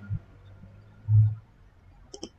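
A man's short, low closed-mouth 'hmm' just past the middle, otherwise faint room tone.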